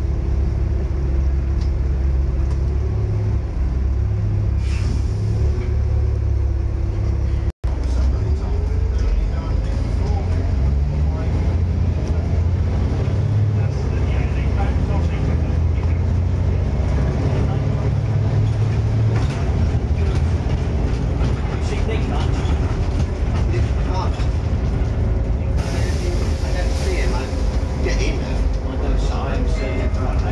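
Volvo B7TL double-decker bus's six-cylinder diesel engine running on the move, heard from the lower deck, its note rising and falling as the bus pulls and eases off. A brief hiss comes near the end, and the sound cuts out for an instant about seven seconds in.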